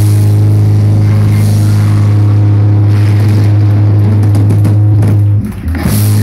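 A loud, steady low note from the amplified bass and guitar, held and ringing out at the end of a live rock song. It breaks off briefly near the end, then comes back.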